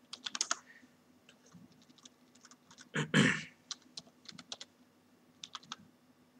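Computer keyboard keys clicking in short bursts of typing, with a few quick keystrokes at a time and pauses between. About three seconds in there is one louder short sound.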